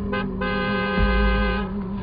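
Horror film score: a held high note over a steady low drone, with a deep boom about a second in.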